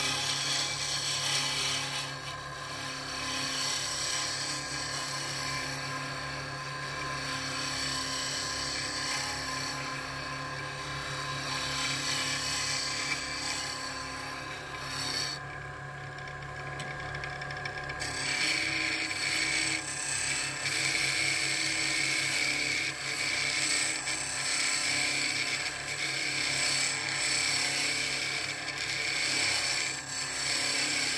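Wood lathe running with a steady motor hum while a gouge cuts a spinning fountain-pen blank, the cut giving a continuous hiss as shavings fly off: roughing the pen body to a rounded profile. The hiss of the cut drops out for about two seconds about halfway through, then resumes.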